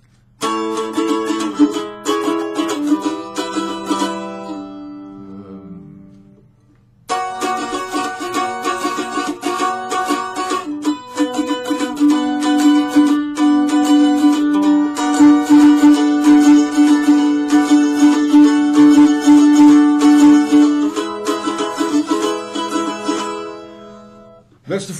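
Solo mandolin playing a chanson verse melody: picked notes start about half a second in and die away, then after a short pause it resumes about seven seconds in with rapid tremolo picking that holds long notes, fading out near the end.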